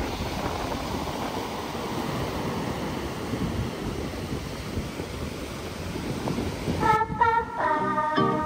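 Ocean surf breaking and washing up a sandy beach in a steady rush. About seven seconds in, plucked acoustic guitar music starts over it.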